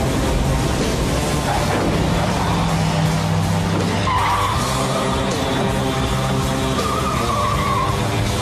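Film soundtrack of dramatic music with car noise; about four seconds in and again near the end, a red tailfinned Cadillac convertible's tyres squeal in wavering screeches.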